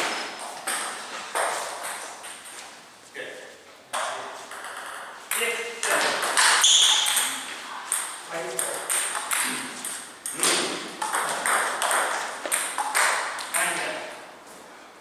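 Celluloid-type table tennis balls clicking off bats and the table at irregular intervals, each click with a short echo, and voices in the background.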